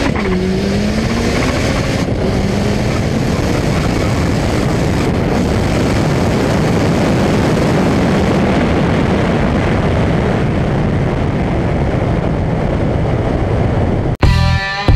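Turbocharged VW Gol front-wheel-drive drag car accelerating hard down the strip, heard from a camera mounted outside the car. The engine note climbs, drops at a gear change right at the start, and climbs again for a few seconds. It then blends into a dense, steady rush of engine and wind noise at speed.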